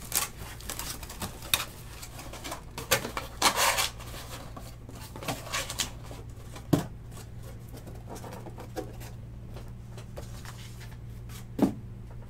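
Off-camera handling noises: scattered rustling and clicking with a few sharp knocks, the loudest about seven seconds in and just before the end, over a steady low electrical hum.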